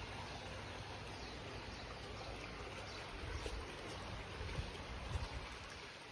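Small bubbler fountain jets in a garden pond, the water splashing and trickling softly and steadily. A few soft low thumps come in the second half.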